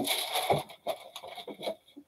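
A large sheet of paper being handled and slid across a table, rustling and crinkling irregularly.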